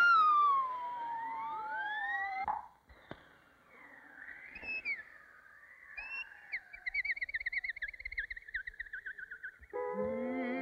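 Cartoon whistle sound effects: a long falling whistle glide crossed by several rising slide-whistle swoops, cut off sharply about two and a half seconds in. After a near-quiet stretch, a high warbling whistle with a fast wavering pitch sounds, drifting slightly lower, and orchestral music comes in just at the end.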